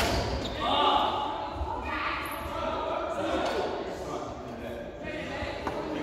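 Indistinct voices talking in a large, echoing sports hall. A sharp knock comes right at the start and a fainter one shortly before the end.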